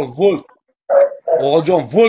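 A man's voice giving two short cries that rise and fall in pitch, then, after a brief pause, quick excited speech.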